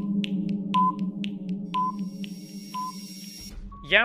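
Quiz countdown-timer sound effect: a steady low electronic drone under clock-like ticks about twice a second, with a short high beep once each second. The ticks and beeps stop about three seconds in, and the drone cuts off just before the end.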